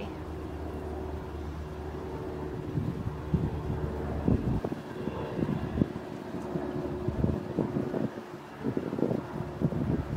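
Wind gusting on the microphone outdoors, in irregular low buffets that start about two or three seconds in, over a low steady background rumble.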